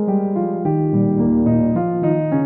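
Background piano music: a steady run of notes over lower held notes.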